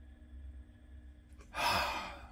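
A man's breathy sigh, about a second and a half in, in a quiet small room.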